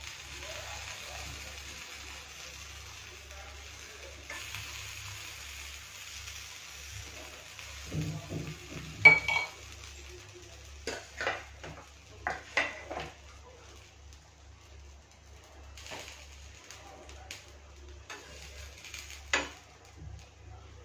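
Paratha sizzling faintly on a hot griddle, then a metal spoon clinking and scraping against the pan and a steel bowl several times, loudest about nine seconds in.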